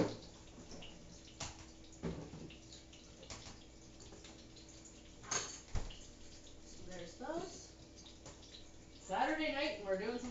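Kitchen work sounds: a sharp clack at the start, then a few scattered knocks and clicks of utensils and dishes over a faint steady hum. Brief voices come in near the end.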